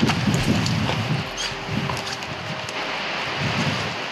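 Wind buffeting the microphone, with low, irregular thuds of a person's footsteps as he walks outdoors.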